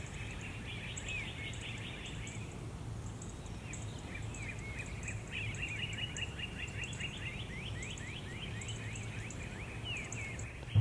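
Outdoor nature ambience: small birds chirping in runs of quick, repeated sweeping notes, busiest from about halfway through. A fainter high chirping comes in short bursts over a low steady rumble.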